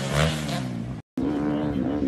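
Dirt bike engines running as the bikes come off a jump. After a split-second dropout about halfway through, a dirt bike engine revs up and down repeatedly.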